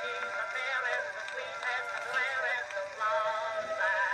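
A mixed chorus singing an old popular-song medley, played back from an Edison cylinder record on an acoustic cylinder phonograph. The sound is thin and lacks bass.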